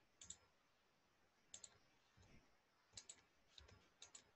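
Faint computer mouse clicks over near silence: a single click, then a few more, some in quick pairs.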